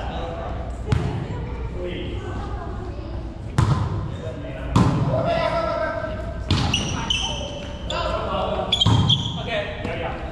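A volleyball being struck during a rally: about five sharp smacks of hands and forearms on the ball, spread a second or two apart and echoing in a large gym hall. Short high squeaks come in the second half.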